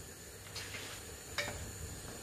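Quiet room tone with two faint clicks, about half a second and a second and a half in, as a large plastic vegetable-oil bottle is lifted and handled.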